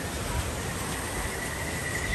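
Outdoor ambience: steady background noise with some low rumble, and a thin, steady high-pitched tone that comes in about halfway through.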